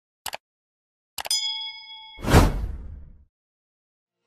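Subscribe-button animation sound effects: a quick mouse click near the start, another click about a second in that sets off a bell-like ding ringing for about a second, then a whoosh that swells and fades.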